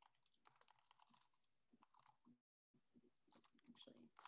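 Near silence with faint, scattered computer keyboard key clicks, a little stronger near the end.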